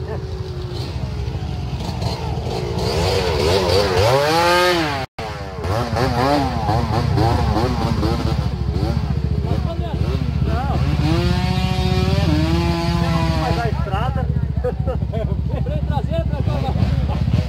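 Several dirt bike engines idling and revving in mud, the pitch swinging up and down with the throttle. One engine climbs sharply in pitch about four seconds in, and another holds a high rev for a couple of seconds near the end.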